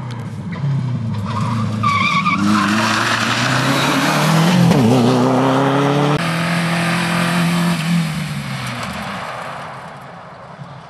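Rally car engines running hard at full throttle as cars pass at speed, with pitch climbing and dropping through gear changes. A brief high squeal comes about two seconds in. The sound jumps abruptly to another car about six seconds in and fades away near the end.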